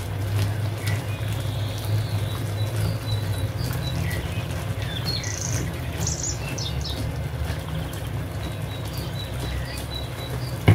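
Chickpeas simmering in a sauce in a frying pan while a wooden spatula presses and stirs them, mashing some. A steady low hum runs underneath, with faint high chirps and small ticks scattered over it.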